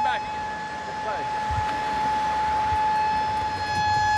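Bondi Beach shark alarm sounding one steady, unbroken tone, the signal for surfers and swimmers to leave the water because a shark has been sighted.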